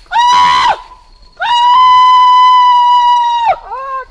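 Kaiapó traditional music from the start of a track: two loud, high-pitched held calls, a short one and then one held steady for about two seconds, each dropping in pitch as it ends. Lower, wavering calls start near the end.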